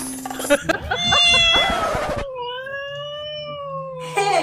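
A cat meowing: one long, wavering yowl that starts about a second in and is held for about three seconds.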